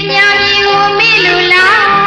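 Burmese pop song: a high female voice singing a melody, with vibrato near the end, over steady instrumental accompaniment.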